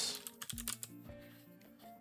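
Computer keyboard typing: a quick run of keystrokes in about the first second, as a short word is typed into a search box, then tailing off.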